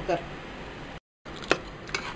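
A single sharp metal knock, a ladle striking the side of an aluminium pressure cooker pot, coming after a moment of dead silence.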